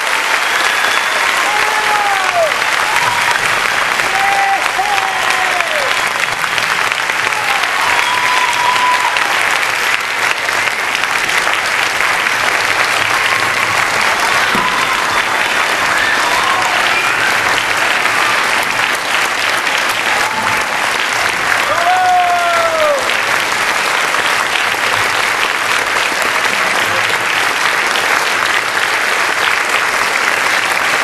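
Concert audience applauding steadily, with a few cheers rising and falling over the clapping near the start and again past the middle.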